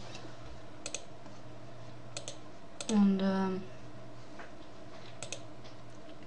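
Computer input clicks: a few sharp paired clicks spread through the span, about four in all. A short voiced 'um' comes about three seconds in, over a steady low electrical hum.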